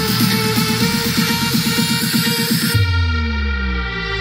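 Electronic dance track played loud through a Gradiente GST-107 vertical soundbar tower, with bass and treble set to maximum. A fast pulsing beat runs until about two-thirds of the way in, then the highs drop out, leaving a deep bass with falling glides.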